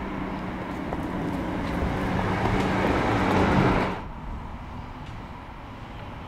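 A motor vehicle on the street, its engine hum and noise growing louder, then cut off suddenly about four seconds in, leaving quieter street background.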